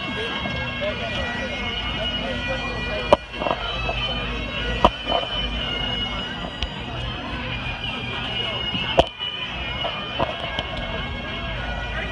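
Bagpipes playing, with steady held drone tones under the tune, over background talk of people. Three sharp knocks stand out, about three, five and nine seconds in.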